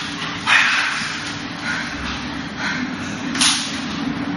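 Two brief, sharp slapping swishes of arms and clothing as Wing Chun sparring partners strike and block: one about half a second in, a louder one near the end. A steady low hum runs underneath.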